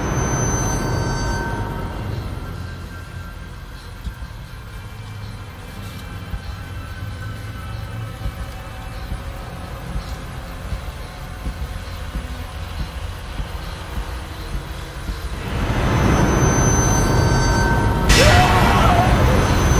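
Dark suspense film score: a deep rumbling drone with a few high held tones at the start. It eases off, then swells louder about fifteen seconds in.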